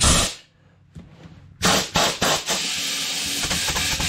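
Compressed air hissing from an air hose pressed onto a coreless ATV tire valve stem: a short blast at the start, then a steady rush from about a second and a half in. The tire is not yet taking air because the beads are still unseated.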